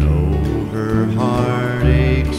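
Slow country song on acoustic guitar, with a deep bass note struck at the start and again near the end, and a held melodic line that slides down and then up in pitch.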